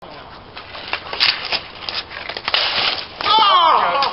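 Street hockey on pavement: a run of sharp clacks and knocks from sticks and ball in play around the goal. About three seconds in, a player lets out a loud shout that falls in pitch.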